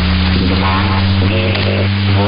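Shortwave numbers-station signal on 9256 kHz received in upper sideband: a steady low hum over static hiss, with brief faint snatches of voice.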